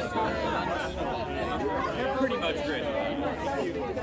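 Several people talking at once: overlapping conversation and chatter, with no single voice standing out.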